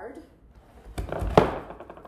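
A plaster mold and its plaster board being tipped up on edge on a worktable: a short scrape of plaster against the table with one sharp knock about a second and a half in.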